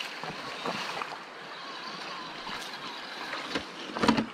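Two RC rock crawler trucks, a Traxxas TRX-4 Sport and a Red Cat Everest Pro Gen 7, driving over rock, their small electric motors and gears whirring with a faint whine that wavers with the throttle, over a steady rush of creek water, with a few light clicks.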